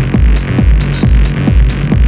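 Techno track from a DJ mix: a steady four-on-the-floor kick drum at about two beats a second, open hi-hats on the offbeats, and a sustained bass line underneath.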